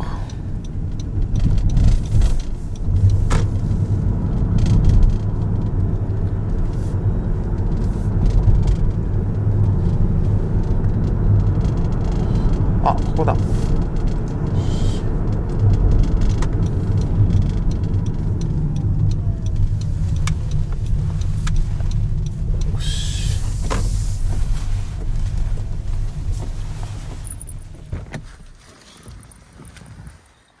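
Road and tyre noise in the cabin of a Honda Odyssey Hybrid minivan on the move: a steady low rumble that fades away over the last few seconds as the car slows to a stop.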